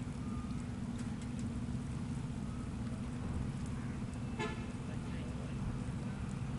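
Boat engine running steadily with a low drone. A short pitched toot about four and a half seconds in.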